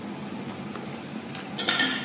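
A fork clinking and scraping against a plate about one and a half seconds in, after a few faint ticks of cutlery.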